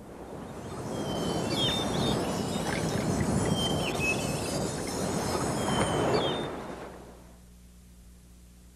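Production-company logo sound effect: a rushing noise swells up over about a second, holds, and fades out near the end, with three short high chirps sounding over it.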